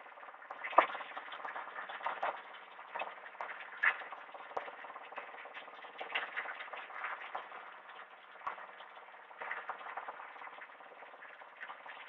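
Steady hum of a bike-wash water pump running, with scattered small clicks and knocks as a motorcycle is hosed and scrubbed.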